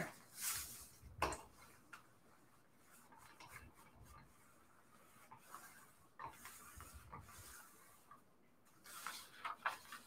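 Faint rustling and scraping of a steam iron sliding over a sheet of damp coffee-dyed paper, with scattered small clicks and knocks from the iron and paper being handled, including a quick run of clicks near the end.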